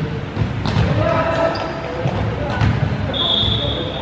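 A volleyball being struck, with two sharp slaps about a second in and again past halfway, amid players' shouts echoing in a large hall. A brief high squeak comes near the end.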